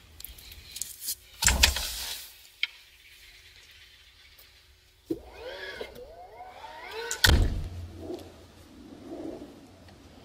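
Car doors being handled, with scattered clicks and a heavy knock about one and a half seconds in. A pitched sound glides up and down for about two seconds from five seconds in. A loud thump a little past seven seconds is the loudest sound.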